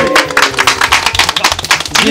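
A small group clapping by hand, the claps coming fast and uneven, over background music.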